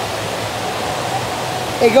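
Steady rushing-water noise of an indoor water park, an even wash of sound with no distinct events.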